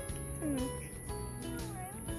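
A cat meowing twice over background music with steady sustained notes.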